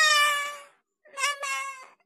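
A young girl meowing like a cat: two high-pitched meow calls about a second apart, each sliding slightly down in pitch.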